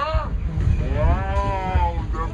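A person's voice holds one long, drawn-out note that rises and then falls, over a dense low thumping.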